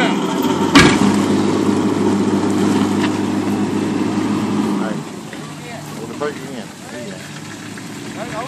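Pickup truck engine running hard under load as it tows a car up out of the water on a tow line, with a sharp bang about a second in. About five seconds in the engine eases off and the sound drops.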